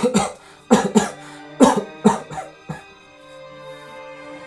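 A man coughing hard, about seven coughs in quick pairs over the first three seconds, over held chords of background music that grows louder near the end.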